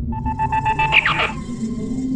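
Dark ambient intro music with a low drone, overlaid with an electronic stinger: a fast pulsing beep that ends in a quick falling sweep about a second in, followed by a high hiss.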